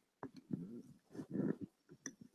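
Faint, distant voices in the room, a few short murmured phrases picked up off-microphone while the microphone is being passed.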